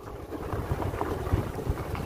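Wind buffeting the microphone of a moving handheld camera: a low, uneven rumble with a few small knocks.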